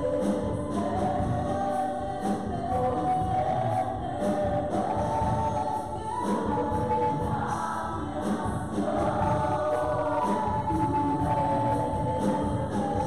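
Three women singing a gospel worship song together into microphones over a live band, with a steady drum-kit beat underneath.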